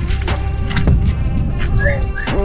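Background music with heavy bass and a beat of repeated drum hits.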